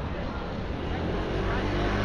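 Wet city-street ambience: a motor vehicle's engine running close by, getting a little louder in the second half, over the hiss of a rain-wet street and the voices of passers-by.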